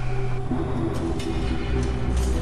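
Low rumbling drone with a few long held notes, an ominous film score from the TV episode being played.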